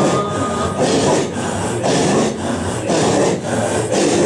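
A group of men performing hadra dhikr, chanting in unison with loud, forced rhythmic breaths, a harsh breathy pulse repeating evenly about two to three times a second.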